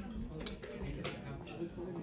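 A few light clinks of metal cutlery and china in a dining room, over a low murmur of voices.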